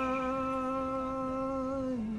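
A live rock band holding a single sustained note that slides up into pitch at its start, wavers slightly, and steps down to a lower note at the end.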